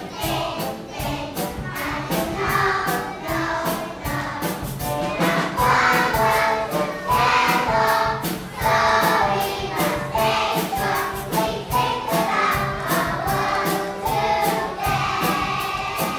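A choir of young children singing a song together over a recorded backing track with a steady beat.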